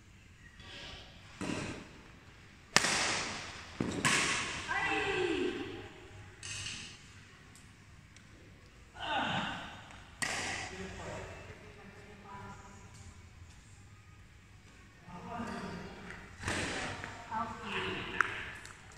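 Badminton rackets striking a shuttlecock, a few sharp cracks ringing in a large hall, about three seconds in, again a second later and again about ten seconds in. Players' voices and calls come between the hits.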